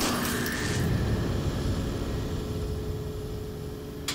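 Sound effects of an animated logo sting: a heavy low mechanical rumble with a short rising whine about half a second in, slowly fading away.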